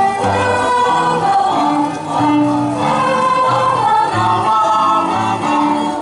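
Children's choir of girls' and boys' voices singing a lively folk song in parts, held notes moving in steps over a steady lower line, with violin accompaniment.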